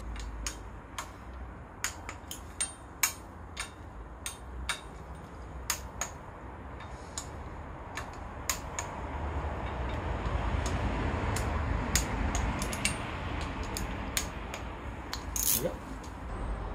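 Hand ratchet clicking in short, irregular strokes while snugging up small water pump bolts, over a low background rumble, with one louder knock near the end.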